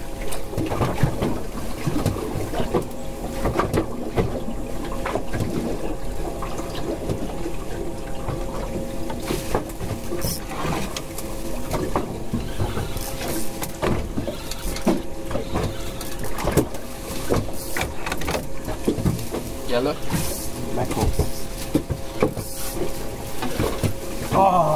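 Small boat's outboard motor running steadily at idle with an even hum, over the slap of water on the hull and scattered knocks on the boat.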